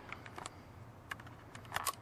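A few faint, sharp clicks and taps, with a quick cluster near the end: handling noise from the hand-held camera, over a low steady background hum.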